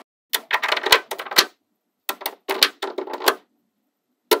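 Small neodymium magnetic balls clicking and snapping together as rows of them are pressed onto a stack. The clicks come in two quick clusters with a pause between.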